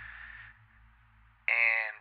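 A pause in a man's spoken narration: a short breathy noise at the start, then quiet with a faint steady low hum, then a brief held voiced syllable near the end.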